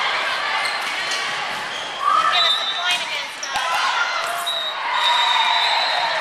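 Indoor volleyball rally: a volleyball struck sharply several times, with players' voices over it, echoing in the gym.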